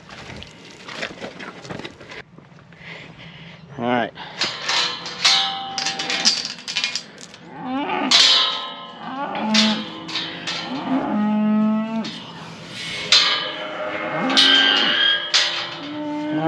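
A herd of beef mother cows mooing, several animals calling over one another again and again from about four seconds in, some calls falling in pitch.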